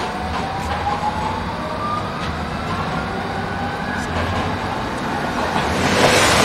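Croydon Tramlink Bombardier CR4000 tram pulling away along street track, its traction motors giving a slowly rising whine over the low running noise as it gathers speed.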